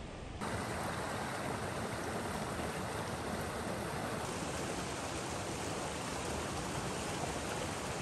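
Shallow creek flowing over rocks and small riffles, a steady rushing water noise that cuts in abruptly about half a second in.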